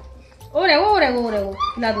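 A three-week-old German shepherd puppy whining: a loud wavering cry that slides down in pitch, then a second short cry near the end.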